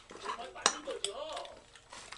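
Spoons and chopsticks clinking against bowls and side-dish containers during a meal, with a sharp clink about two thirds of a second in and another about a second in.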